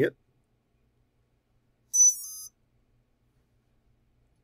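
A three-phase quadcopter motor's power driver (ESC) powering up on 6 volts: a short run of high beeps, stepping between pitches, sounded through the motor about two seconds in and lasting about half a second. It is the driver's signal that the supply voltage is correct.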